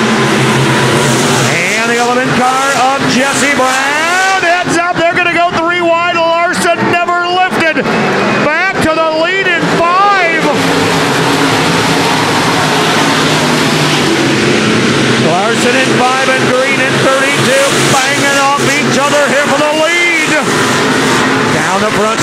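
A pack of dirt-track stock cars racing, several V8 engines revving up and down together as the cars go through the turns and past.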